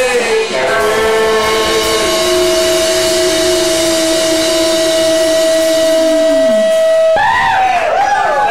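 A live psychedelic rock band ending a song. The drums drop out and a long steady high tone is held while a lower sung note slides slowly down and fades. About seven seconds in, a voice with wavering pitch breaks in.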